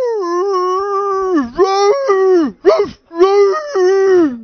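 A young man howling into a microphone in imitation of a basset hound–beagle mix: about four long howls held at a steady pitch, each sliding down at its end, the second one rising before it falls.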